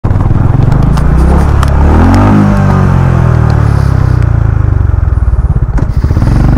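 Motorcycle engine running under the rider on a rough gravel track. Its pitch rises about two seconds in as it accelerates, then settles into a steady, pulsing run.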